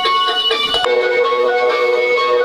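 A Michael Myers door greeter playing its built-in music through its speaker, set off by its button: quick repeated notes, then longer held notes from about a second in.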